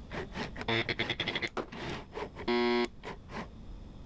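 Sped-up sound of a robot arm and electrical vacuum gripper at work: rapid clicking and whirring in quick clusters, with a short steady buzz about two and a half seconds in.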